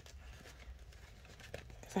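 Faint rustling and a few light ticks of hands handling a plastic binder and its laminated savings sheet on a table, over quiet room tone.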